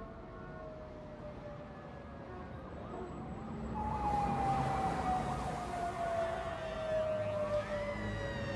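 City street ambience with sirens wailing over traffic noise, getting louder about four seconds in.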